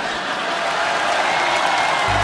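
Studio audience applauding, a steady spell of clapping.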